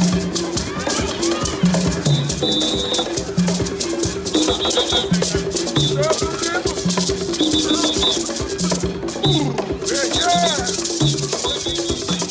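Up-tempo African-style percussion music: tall wooden hand drums and a shaker playing fast, steady strokes over a low pattern that repeats about once a second, with voices calling out now and then.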